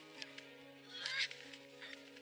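Film score with sustained low orchestral chords, and a brief, louder, wavering high sound about a second in.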